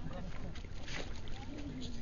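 Indistinct voices of onlookers talking, over a steady low rumble of wind on the microphone, with a brief hissing noise about a second in.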